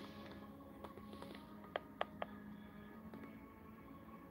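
Quiet room with a faint steady hum, broken near the middle by three quick light clicks about a quarter second apart, handling noise from the boxed action figure and camera being moved for close-ups.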